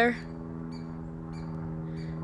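A steady, low-pitched mechanical hum holding one pitch, with a few faint, short high chirps over it.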